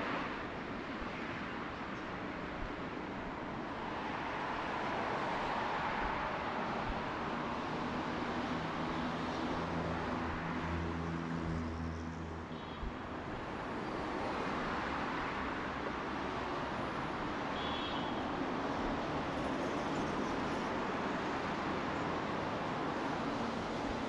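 Road traffic on a multi-lane street: a steady wash of tyre and engine noise that swells and fades as cars drive past. A passing vehicle's low engine hum stands out for a few seconds just before the middle.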